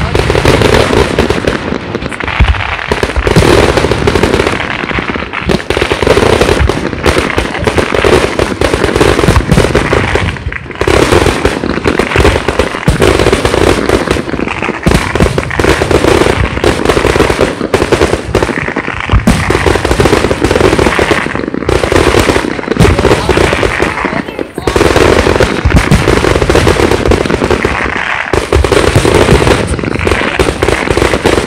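Aerial firework shells launching and bursting in a rapid, near-continuous barrage, very loud, with bangs and crackles overlapping and only a couple of brief lulls.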